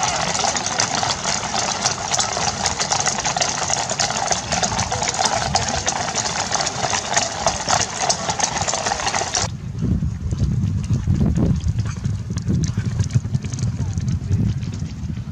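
Many horses' hooves clip-clopping at a walk on a brick-paved road, a dense irregular clatter. About two-thirds of the way in it cuts off and gives way to wind rumbling on the microphone.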